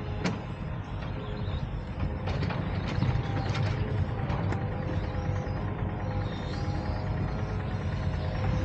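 Low, steady rumble of a sailing yacht's engine running throttled back, with background music over it and a few light clicks.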